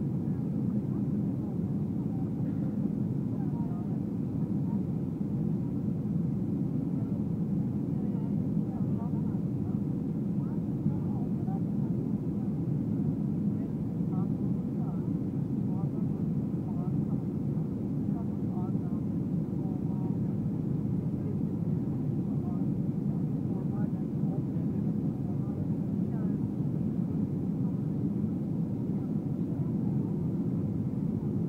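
Steady roar of a Boeing jet airliner's engines and rushing air heard inside the passenger cabin during the descent on final approach, with faint passenger chatter beneath it.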